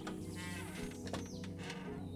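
Glass storm door creaking as it swings shut, a short squeal about half a second in, over background music.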